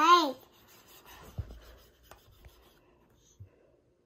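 A child's brief voiced sound at the very start, then faint scratching of a plastic stylus across the screen of an LCD writing tablet, with a few light taps.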